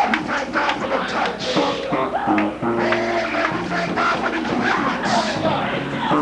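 Live gospel praise-break music from a church band: a bass line stepping through notes under guitar and drums with a steady beat, and voices singing over it.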